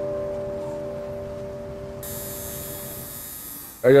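A memorial bell ringing on after a single toll, its tone slowly fading away near the end. It is one of the vigil bells rung once for each person who was killed.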